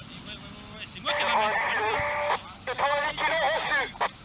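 A voice over a two-way radio in two bursts of about a second each, part of the winch-launch exchange confirming the 90 kg pre-tension asked for before a paraglider tow launch.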